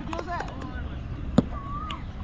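A single sharp knock of a cricket ball being struck, about a second and a half in, over a steady low wind rumble.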